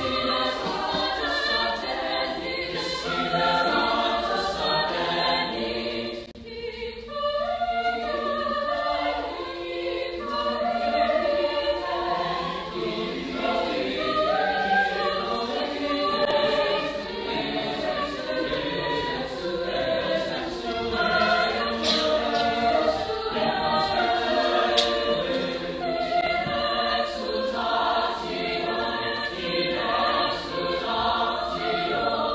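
Mixed-voice choir singing, with a brief drop in the sound about six seconds in before the voices come back in.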